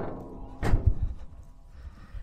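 A single thump on the steel hood of a 1959 Chevy pickup about two thirds of a second in, with a deep knock under it, as the closed hood is struck.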